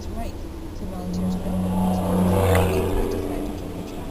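Road and engine noise heard from inside a moving car as an oncoming truck passes: the sound swells to its loudest about two and a half seconds in, then falls in pitch and fades.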